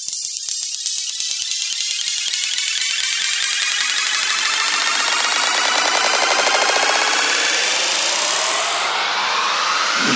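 Electronic trance track in a breakdown build-up. The bass and beat drop out while a rising noise sweep with many tones gliding upward climbs steadily in pitch and loudness.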